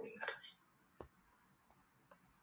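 Near silence, with a faint brief murmur of a voice at the start and one sharp click about a second in: a stylus tapping a tablet screen while handwriting.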